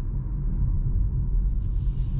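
Steady low road and tyre rumble inside the cabin of a Hyundai IONIQ 5 electric car driving along a country road, with no engine sound.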